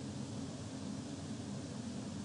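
Steady background hum and hiss with no distinct sound event: room tone of a voice recording during a pause.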